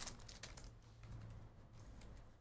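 Faint light clicks and rustles of trading cards being handled, slid out of a freshly torn foil pack and flicked through, over a low steady room hum.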